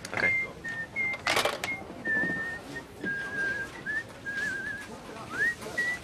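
A man whistling a meandering tune, the notes sliding and wavering, with short upward swoops near the start and again near the end. A sharp clack about a second and a half in.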